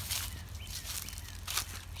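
Footsteps crunching through dry fallen leaves on a forest floor, a couple of separate steps, over a low steady rumble.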